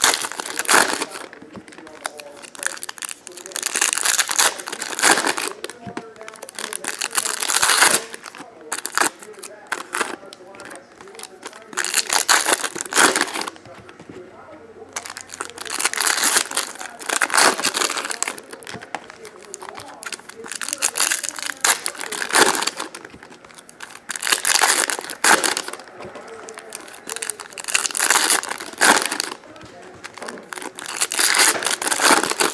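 Foil Donruss Optic football card-pack wrappers crinkling and tearing as packs are ripped open one after another, in irregular bursts every couple of seconds.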